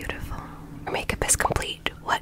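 Soft, close-microphone whispering, with a few short clicks in the second half.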